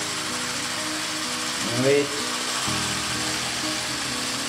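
Small Lego electric motor running steadily, driving its plastic gear train with a continuous whirring, as the launcher's rotation is checked.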